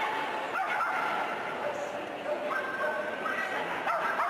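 A small dog yipping and barking in several high calls over the steady murmur of an arena crowd.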